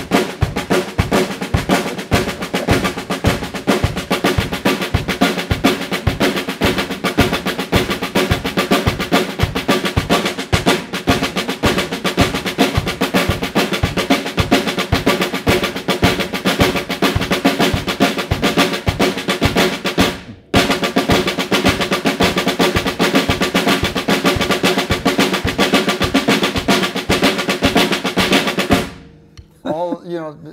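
Drums played with sticks in a fast, continuous sticking exercise: a pattern that starts with a double stroke and ends with a single, displaced against the beat. There is a brief break about twenty seconds in, and the playing stops shortly before the end.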